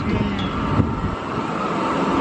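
Children's fairground hopper ride running: a steady rumbling mechanical noise with a faint steady whine, the low rumble dropping away a little over a second in.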